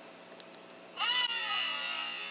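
A predator call sounds once, about a second in: a short, high, whining note that rises and falls in pitch and then trails off.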